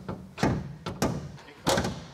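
A few short knocks and clunks from a van's bonnet being felt for and worked open at its front edge, the loudest near the end.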